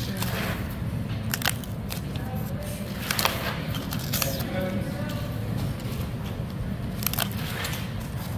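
Paper pull-tab tickets being torn open by hand: several sharp paper snaps spread through, with light rustling between them.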